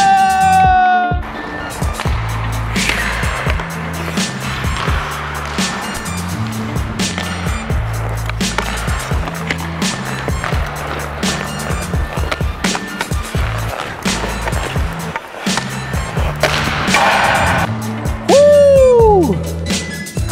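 Hockey skate blades scraping and carving on rink ice, under background music with a steady beat. Near the end comes a short swooping tone that rises then falls.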